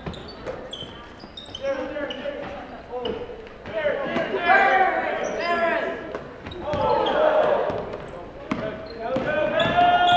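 A basketball being dribbled on a hardwood gym floor, with players' and spectators' voices and short high squeaks during live play, all echoing in the gym.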